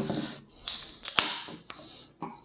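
Aluminium beer can being opened: a few sharp clicks and cracks from the pull tab, each with a brief hiss of escaping carbonation.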